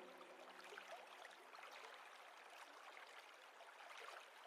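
Near silence between two lo-fi music tracks: a faint even hiss, with the last low note of the previous track dying away in the first second.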